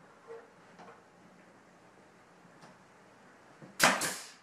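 Pneumatic nail gun firing once near the end, driving a nail through crown molding: a single sharp, loud crack with a short tail. Before it there is only faint room noise.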